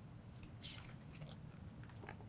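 Faint rustle and crinkle of a picture book's paper page being turned by hand, with a few small ticks of handling.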